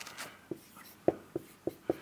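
Dry-erase marker writing on a whiteboard: faint scratching, then a quick run of short, sharp ticks as the marker strikes and lifts off the board.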